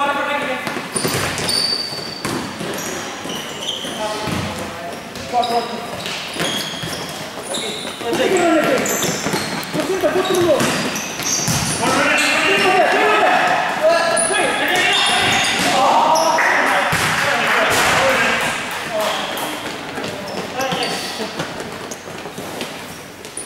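Indoor futsal game: players shouting to each other across an echoing hall, the ball knocking off feet and bouncing on the court, and short shoe squeaks on the floor. The voices get louder from about a third of the way in until near the end.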